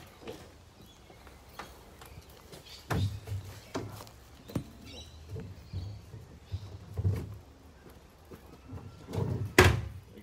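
Plastic wheelie bin being used as a snake holding bin: scattered knocks and thumps as the snake is lowered in, then the plastic lid slapping shut with one loud bang near the end.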